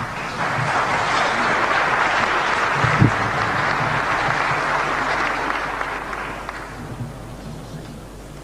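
Audience applauding: the clapping builds up in the first half second, holds steady, then dies away over the last couple of seconds, with one louder knock about three seconds in.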